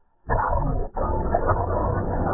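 A short silence, then a loud sound of charging bulls starts abruptly, breaks off for an instant just before the one-second mark, and carries on steadily.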